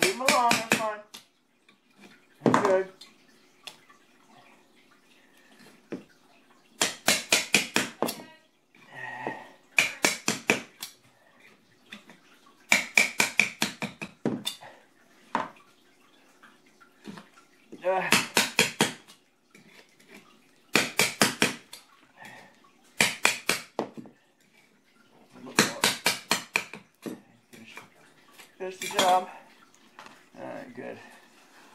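Hammer driving a chisel against a kitchen floor to chip out old tile where a tile is being replaced, in bursts of several quick sharp strikes every two to three seconds.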